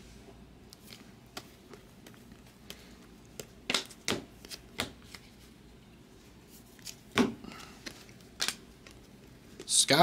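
Trading cards being flipped through by hand off a stack, a scatter of sharp, short card flicks and snaps, most of them in the middle seconds.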